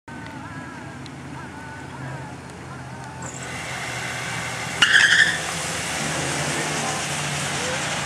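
Two four-cylinder compact cars, an R18-engined Honda Civic and a Dodge Neon, running at the drag-strip start line with the sound building up as they rev. About five seconds in comes a sharp, loud half-second tyre squeal as they launch, followed by both engines running hard under acceleration.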